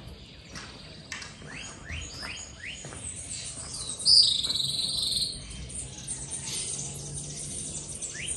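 Wild birds calling: a quick run of five short rising notes, then a louder, high, rasping call about four seconds in that lasts about a second.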